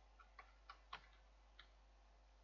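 Faint computer keyboard keystrokes: about five short clicks in the first second and a half, then only a low hiss.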